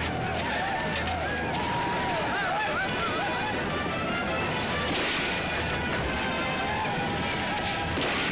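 Soundtrack of a film's cavalry battle scene: music over a steady, dense din of battle noise, laced with many wavering high-pitched tones and a louder noisy swell about five seconds in.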